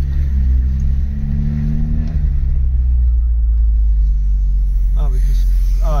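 Vauxhall Astra GTE 16v's 2.0-litre 16-valve four-cylinder engine, heard from inside the cabin as a steady low rumble while the car crawls at low speed. The engine note rises gently for about two seconds, then drops and settles.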